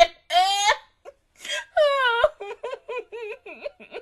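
A high-pitched voice giving two long cries that fall in pitch, then a quick run of short, broken pitched syllables.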